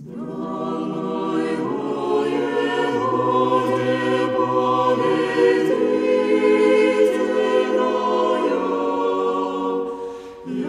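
Church choir singing Russian Orthodox chant a cappella in several parts. It enters out of silence at the opening of a piece and holds sustained chords over a low bass line.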